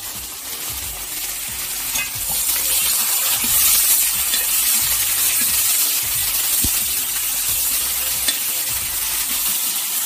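Shallots, garlic, green chillies and sliced tomato sizzling in hot oil in a metal wok while being stirred with a slotted metal spoon. The sizzle grows louder about two seconds in and then holds steady.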